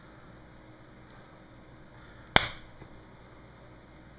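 A single sharp snap a little over two seconds in, as the iPhone 3G's front glass and digitizer assembly pops free of its housing under the pull of a suction cup. Otherwise only faint room tone.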